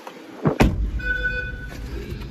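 Two sharp knocks in quick succession about half a second in, then a low rumble and a short steady beep lasting under a second.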